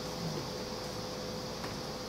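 Room tone: a steady hiss with a faint, constant hum, in a brief pause between spoken sentences.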